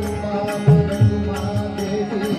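Pakhawaj accompanying devotional kirtan music: a rhythmic pattern of drum strokes, with deep bass strokes standing out about 0.7 s and 1 s in, over sustained melodic accompaniment.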